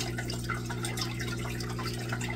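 Aquarium water trickling steadily, with small drips, over a steady low hum.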